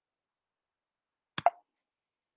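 A single short click and pop about one and a half seconds in, with silence around it.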